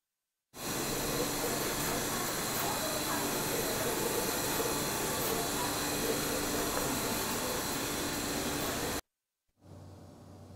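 Steady machine noise of an SMT pick-and-place machine running on a factory floor, an even hiss with a low hum. It starts about half a second in and cuts off suddenly near the end.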